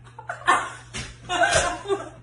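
A sharp slap about half a second in, the loudest sound, and a weaker smack about a second in, followed by a woman's excited, laughing cry.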